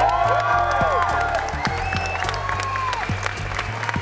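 Crowd applauding, heard as a dense patter of claps, over background music with held, gliding notes and a steady bass line.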